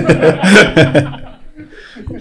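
People laughing and chuckling at a joke, loudest in the first second, then dying away.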